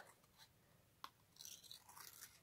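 Small scissors cutting through inked cardstock: one sharp click about a second in, then faint crisp snips near the end.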